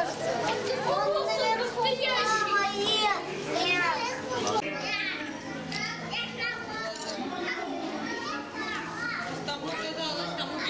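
Crowd of children talking and calling out at once, many voices overlapping, busiest in the first half and easing off somewhat after about four and a half seconds, with a steady low hum underneath.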